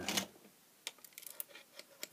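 A square-pin mains plug being pulled out of a plug-in energy meter's socket: one sharp click a little under a second in, then a few faint handling clicks.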